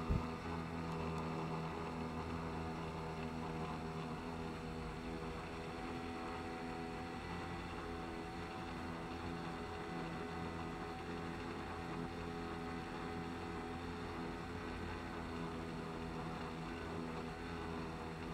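Small outboard motor running at a steady speed, pushing the boat along: an even, unchanging drone.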